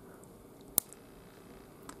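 A single sharp snap about a second in: a thin 3D-printed part in HeyGears PAF10 flexible resin breaking as it is bent between the fingers, at its breaking point.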